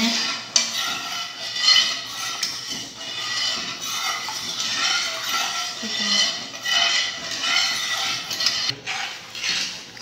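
A spoon stirring and scraping around a metal saucepan of thickening milk and cornstarch cream, with a couple of sharp clinks against the pan, about half a second in and near the end. The stirring is kept up without stopping so the cream doesn't turn lumpy over the heat.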